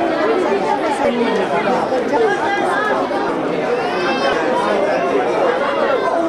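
Overlapping chatter of several men talking at once, a steady hubbub of conversation with no one voice standing out.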